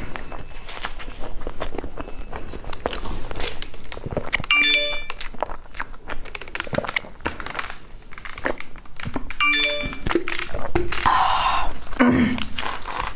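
Close-miked eating sounds: wet mouth clicks and chewing, with drinking from a bottle in the middle. A short chime of several steady tones sounds twice, about five seconds apart. Near the end there is a rustle as a cake's paper cup is handled.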